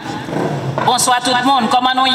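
A woman speaking into a podium microphone over a public-address system: a short spoken phrase starting under a second in.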